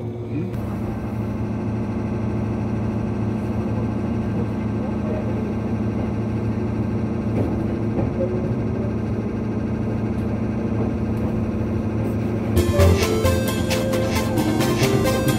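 Steady running noise of the Nikko Line "Iroha" train heard from inside the carriage, with a low steady hum. A rhythmic background music track cuts in near the end.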